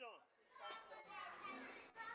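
Faint voices of children talking and playing.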